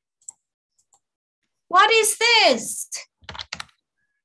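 A person's voice in two sing-song syllables, the pitch rising then falling, followed by a quick run of computer mouse and keyboard clicks as a text box is inserted on a presentation slide.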